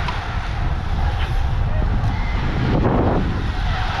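Wind buffeting a GoPro action camera's microphone on a moving road bike, a steady low rumble of wind and road noise with a brief swell about three seconds in.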